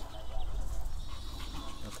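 Faint, thin, high whining of Pomeranian puppies over a low steady rumble.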